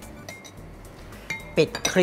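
Light clinks of a glass food dish and kitchen utensils being handled on a counter, with a sharper clink about a second and a half in.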